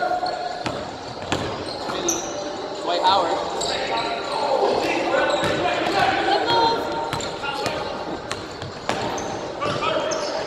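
Basketball bouncing on a hardwood gym floor during play, with repeated knocks, short high sneaker squeaks and players' voices, echoing in a large hall.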